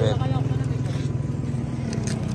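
Motorcycle engine idling, a steady low running note with a fast even pulse.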